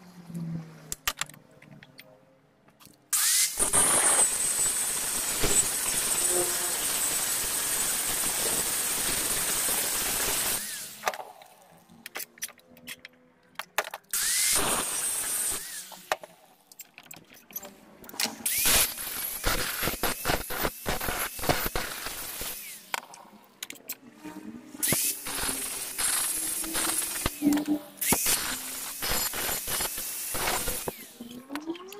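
Handheld angle grinder running for about seven seconds, then again briefly. Later comes a long run of quick, irregular sharp metal knocks and scrapes from metalworking at the vise.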